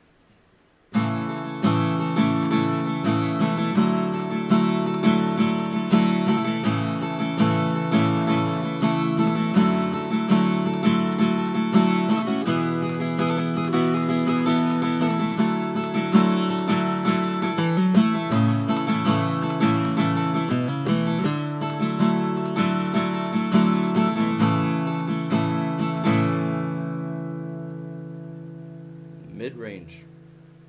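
Seagull Natural Elements Mini Jumbo acoustic guitar with a solid spruce top, played with a capo: a run of chords starting about a second in, then a last chord left to ring and fade over about four seconds near the end.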